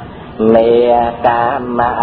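Buddhist recitation chanted in Khmer in a sing-song voice: after a brief pause near the start, long held notes that waver slightly in pitch.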